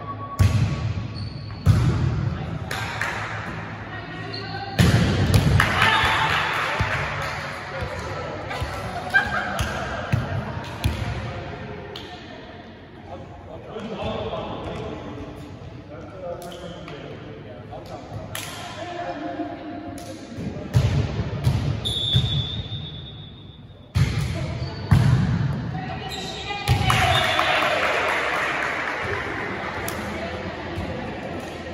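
Volleyball being played in a large echoing gym: a series of sharp hits of the ball, with players' voices calling out between them.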